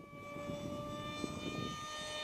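Electric park-jet RC plane's 2212 2200 Kv brushless motor and 6x4 propeller running in flight, a steady high whine with several overtones that grows slightly louder.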